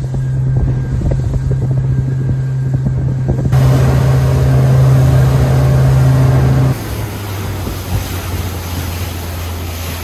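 Small fishing boat's engine running steadily underway, a loud low hum that drops to a lower pitch about seven seconds in. A rushing hiss of wind and water sits over it from about three and a half seconds in.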